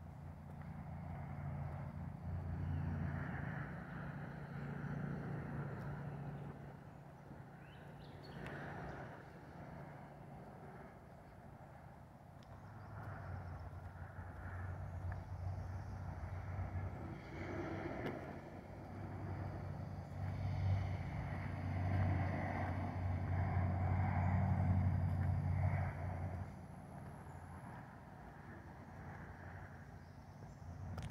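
A motor vehicle engine running, with a low steady drone that grows louder twice: in the first few seconds and again through the second half, dropping off suddenly a few seconds before the end.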